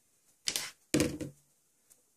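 Two sharp clacks of small objects knocked on a tabletop, about half a second apart, the second louder with a brief ring.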